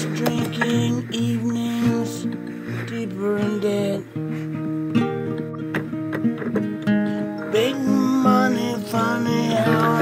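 Acoustic guitar played solo: a quick run of picked notes over ringing bass strings.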